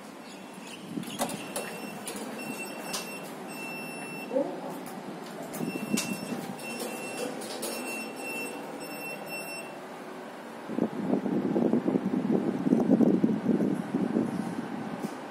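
Fujitec passenger lift beeping: a run of short, high, evenly spaced beeps, about one and a half a second, as the car stands at the floor with its doors open. Near the end a louder rumbling comes in as the doors close and the car starts to move.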